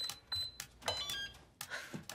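Electronic safe keypad beeping as its buttons are pressed: a few short high beeps, then about a second in a quick run of falling tones as the right code unlocks the safe.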